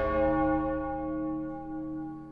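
A large bell ringing after a single stroke, its many-toned hum slowly dying away.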